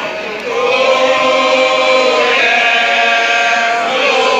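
A group of voices chanting together in long held notes, moving to a new, slightly higher note a little past halfway.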